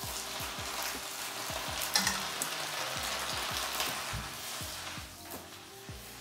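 Blanched water spinach and garlic sizzling in hot oil in a frying pan, with the clicks of chopsticks against the pan as it is stirred. The sizzle eases a little near the end.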